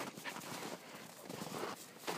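Footsteps through snow: a few soft, irregular steps.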